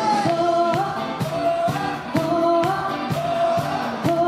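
Dance music with singing over a steady beat of about two pulses a second.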